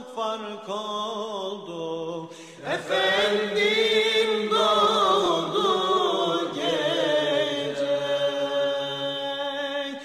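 A solo male voice chants a slow, unaccompanied Islamic religious melody, holding long ornamented notes. A louder new phrase begins with a rising swoop about two and a half seconds in.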